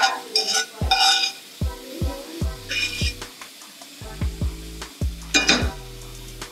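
Metal spoon scraping and clinking against a stainless steel frying pan as food is served out, in short bursts near the start, about three seconds in and near the end. Background music with a deep bass beat plays underneath.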